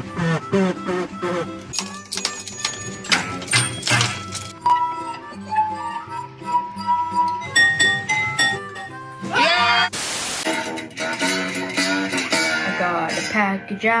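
Children playing homemade instruments one after another. First come pitched blown notes through a plastic tube. Then, about five seconds in, water-filled glasses are tapped with a spoon and ring clear notes of a few different pitches. Near the end a boy sings over a homemade tin-can-and-string instrument.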